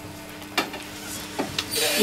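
Quiet room sound with a faint steady hum, two soft clicks about a second apart, and a short hissy rustle near the end, just before a choir starts singing.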